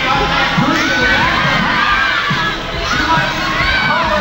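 Roller derby crowd cheering and yelling, many voices shouting over each other.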